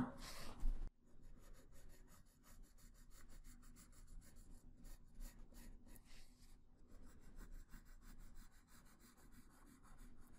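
A 3B graphite pencil sketching lightly on drawing paper: faint, rapid scratching of many short strokes, a little louder in the first second.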